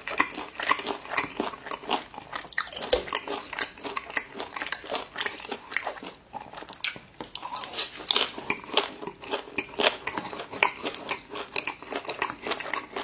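A person chewing and biting food close to the microphone, ASMR-style: an irregular run of short clicks and smacks from the mouth.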